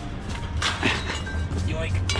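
A few short metallic clinks and scrapes as a steel rebar rod and a chain-link fence are handled, under a man's voice and background music.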